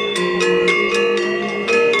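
A pair of Balinese gender wayang, bronze-keyed metallophones over bamboo resonators, struck with disc-headed mallets in both hands and playing a quick melody of ringing, overlapping notes.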